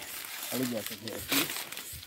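A few words from a man's voice over rustling of dry leaves underfoot, with one short sharp rustle or click about a second and a half in.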